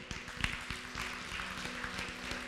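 Soft sustained keyboard chord, a few steady notes held under a pause in the preaching, with a few scattered short taps from the room.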